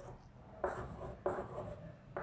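Chalk writing on a blackboard: two short scratchy strokes, the first a little after half a second in and the second about half a second later.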